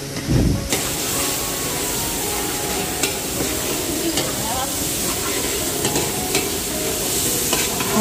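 Chili, garlic and fermented soybean paste frying in oil in a wok, sizzling steadily while a metal spatula stirs and scrapes the pan with occasional clicks. A dull thump comes right at the start.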